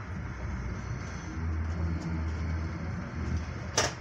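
A locomotive-hauled InterCity train on the move, heard from inside a coach: a steady low rumble with a low hum that swells in the middle. A single sharp knock comes near the end.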